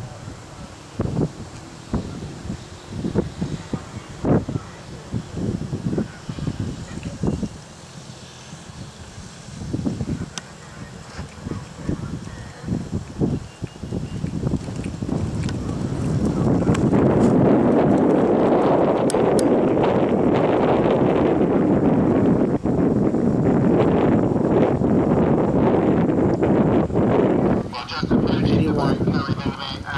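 Wind buffeting the microphone: a dense rushing noise that builds from about halfway through and stays loud to the end. Before it, scattered short thumps and knocks.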